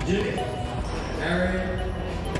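Indistinct voices in a large hall over a steady low rumble.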